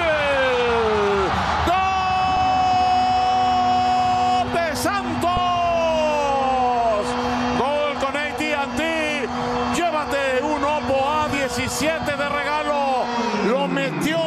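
A TV football commentator's drawn-out goal shout: after a few excited falling cries, one long 'gooool' is held on a single note for about ten seconds and drops away near the end, with the stadium crowd cheering underneath.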